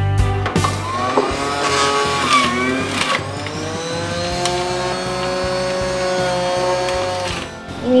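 Background music with a sustained melody, over the steady low hum of an electric juicer's motor as carrot, tomato and apple are pressed through it.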